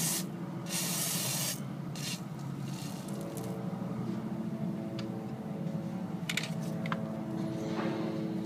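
Aerosol can of WD-40-type penetrating fluid sprayed in short hissing bursts at a fitting on a 6.0 Powerstroke's high-pressure oil pump: one burst about a second in, a short one just after, then fainter puffs. A few light metallic taps follow near the end, over a steady low hum.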